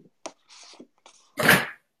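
A single short, forceful burst of breath from a person, about one and a half seconds in, after a few faint clicks and a soft rustle.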